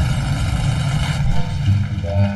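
Designed intro sound effect for a logo reveal: a deep, steady rumble with a rushing noise over it that falls away about a second in, after which a few steady tones come in.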